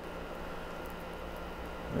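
Steady low hum and hiss of background room noise, with a few faint rustles and ticks from stiff Cat6 wire pairs being untwisted by gloved hands.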